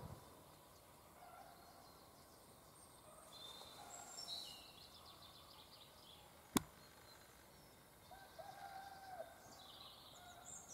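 Faint woodland birdsong: scattered short calls, with a longer held call near the end. A single sharp click sounds a little past the middle.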